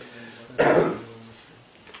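A man coughs once, a single short cough about half a second in.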